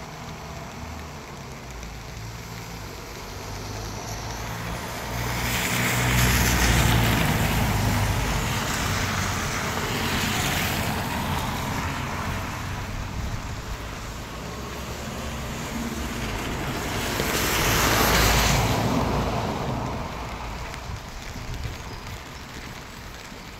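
Two vehicles passing one after the other on a rain-soaked road, their tyres hissing through the surface water; each pass swells up and fades over a few seconds, the first peaking about six seconds in and the second near eighteen seconds. Steady rain runs underneath.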